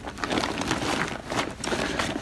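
Clothing rustling and shuffling as garments are picked up from a pile and handled, a run of irregular scratchy rustles.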